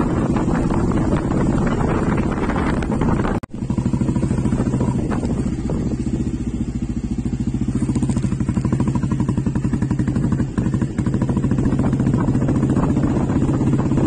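Motorcycle engine running at a steady cruise while being ridden, with a fast, even pulsing. Wind rushes over the microphone for the first few seconds, then the sound cuts out for an instant about three and a half seconds in, and the engine comes through more clearly after that.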